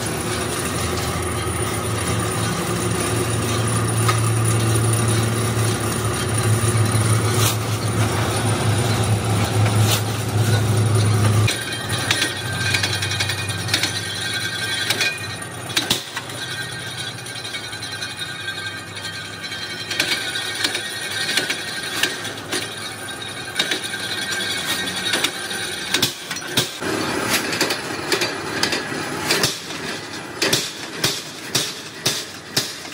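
Flywheel-driven mechanical punch press perforating a steel sheet: the drive runs with a steady low hum that drops away about a third of the way in. After that come metallic knocks and clanks, irregular at first and settling into a regular clanking near the end.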